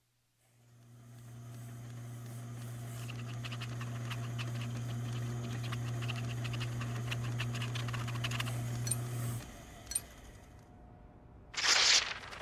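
A machine's steady electric hum with the fast scratching and ticking of a chart-recorder pen tracing across its paper drum, both cutting off suddenly a little after nine seconds in. A short loud rasp follows near the end.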